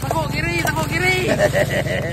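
The small engine of an open-seat vehicle running steadily underway, a low pulsing drone, with people's voices over it.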